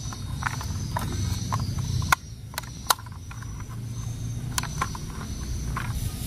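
Sharp plastic clicks and taps from a toy locomotive's plastic body being turned over and fiddled with in the hands, scattered irregularly, over a steady low rumble.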